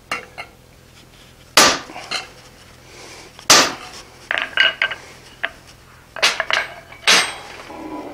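Steel-on-steel clanks at a blacksmith's anvil: a hand hammer striking a set hammer held on a hot iron bar, and the tools knocking on the anvil face as they are handled. About four loud, sharp clanks a second or two apart, with lighter clinks between them.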